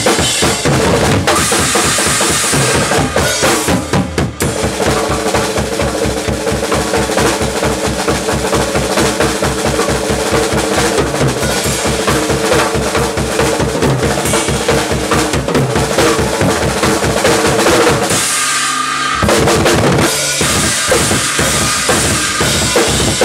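Acoustic drum kit with Zildjian cymbals played solo, fast and hard, with snare and cymbals over a long run of rapid, even bass drum strokes through the middle. The drumming breaks off briefly about three seconds before the end, then comes back in.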